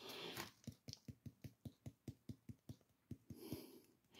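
A rapid run of about a dozen light taps, roughly five a second, on an upturned miniature display base freshly flocked with static grass, knocking the loose excess fibres off. A short rustle of handling comes before the taps.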